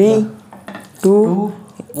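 A man counting down aloud, "three… two…", with a couple of light clinks like small metal utensils touching a dish between the words.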